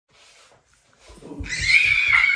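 A loud, high-pitched, drawn-out shriek that rises in from about halfway through, over low thumping.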